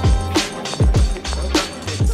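Background hip-hop music with a steady beat: deep bass kicks that drop in pitch, a sustained bass line and crisp hi-hats.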